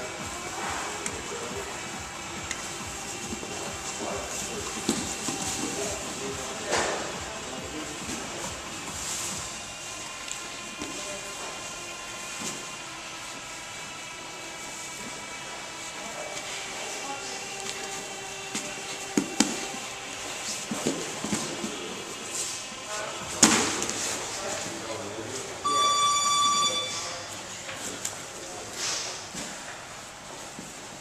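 Scuffling and occasional thumps of two grapplers' bodies on foam mats, under faint background music and indistinct voices. Near the end a single electronic tone sounds for about a second.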